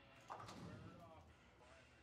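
Bowling pins struck by the ball: a faint sudden clatter about a third of a second in, followed by a short, faint voice.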